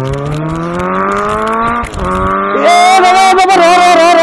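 Car engine revving sound effect, rising in pitch like accelerating through a gear, with a break about two seconds in as if shifting up. It then carries on as a higher, wavering whine.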